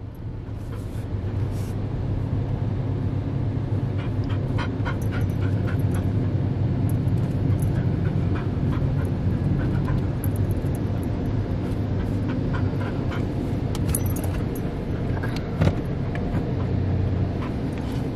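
Steady low hum of the car heard from inside its cabin, with a blue heeler (Australian cattle dog) panting and giving a few short whines.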